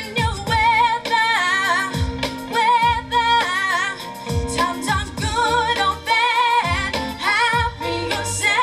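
A woman singing a soul song live into a microphone, holding notes with a wide vibrato, over backing music with a deep kick drum.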